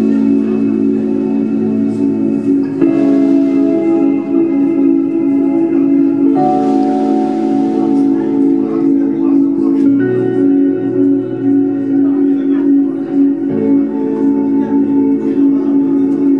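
Live band's instrumental intro: clean electric guitars and an electric keyboard playing sustained chords that change about every three to four seconds, before any singing.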